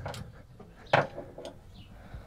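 Handling noise as a felt circle is pressed against plastic hook-and-loop fasteners to test whether it grips: one sharp click about a second in, with fainter ticks before and after.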